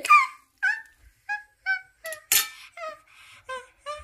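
A child giggling in a run of short, high-pitched bursts, about three a second, with one sharp breathy burst about halfway through.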